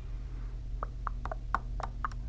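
A coin scraping the latex coating off a paper scratch-off lottery ticket: a quick run of short, irregular scrapes starting about a second in.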